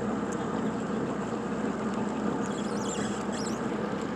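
A motorboat's engine running steadily at low speed, an even hum under water and air noise.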